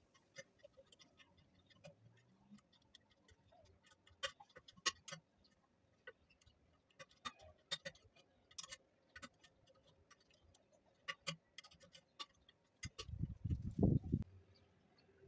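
Thin steel construction rod clinking against the pins and lever of a hand rebar bending jig as it is bent: scattered sharp metallic ticks, with a louder cluster of low knocks near the end.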